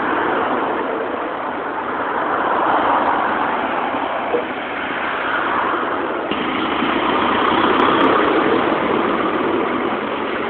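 Road traffic: cars driving past close by, their tyre and engine noise swelling and fading as each passes, loudest about three seconds in and again around eight seconds.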